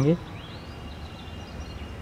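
Steady outdoor background noise with a low rumble, and faint bird chirps about half a second to a second in.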